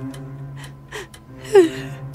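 A woman's shaky gasping breaths, the loudest about one and a half seconds in, over soft background music with steady held notes.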